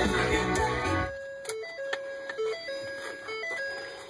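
Rock music with singing plays through the truck's cabin speakers and stops abruptly about a second in. It is replaced by a simple electronic melody of single steady notes stepping up and down, like a chime tune.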